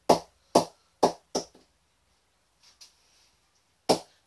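Leather cricket ball bounced on the face of a Ton Slasher English willow cricket bat near the top of the blade, a ping test: four sharp knocks about half a second apart, a pause with two faint taps, then one more knock near the end. The ball springing back off the top is taken as a sign of good compression throughout the bat.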